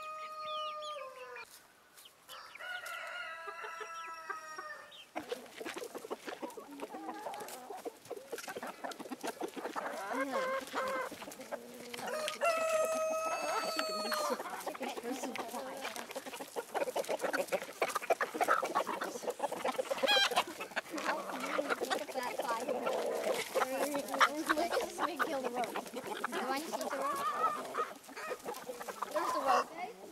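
A flock of chickens clucking while pecking at food, with rapid short taps throughout and two longer drawn-out calls, about three and thirteen seconds in.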